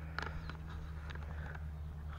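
Quiet outdoor background: a steady low hum, with a few faint clicks near the start and one short, high falling chirp about half a second in.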